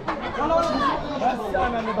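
Several people's voices talking over one another, with a call of "hay" right at the start.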